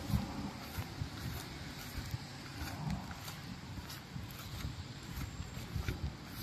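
Outdoor ambience: a low, uneven rumble with scattered soft thumps and short clicks, as from a handheld camera being carried through a forest.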